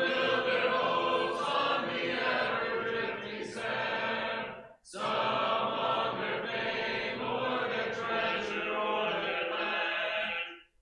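A congregation singing a hymn chorus a cappella, many voices together with no instruments. There are two sung lines, with a short breath pause about five seconds in.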